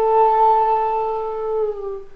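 Bamboo transverse flute (pullankuzhal) holding one long, steady note that dips slightly in pitch and fades out near the end.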